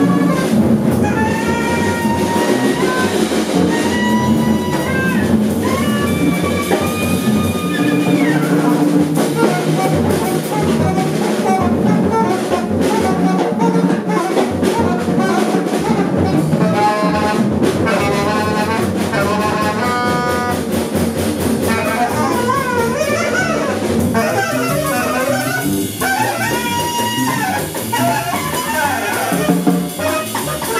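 A free-improvised jazz trio playing live on saxophone, drum kit and double bass. The saxophone plays held and sliding notes over busy drumming with cymbals, and the drumming grows denser in the middle of the stretch.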